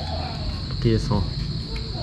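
Crickets chirring in one steady, unbroken high-pitched drone.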